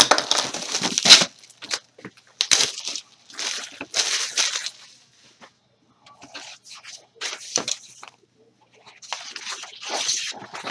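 Plastic wrapping being torn and crinkled off a sticker pad, in a run of irregular rustling bursts, the loudest about a second in.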